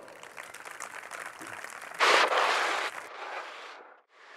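Audience applauding and cheering. It swells louder for about a second midway, then thins and fades away.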